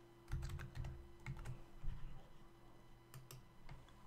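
Keystrokes on a computer keyboard, typed in short irregular runs, with a pause of about a second in the middle.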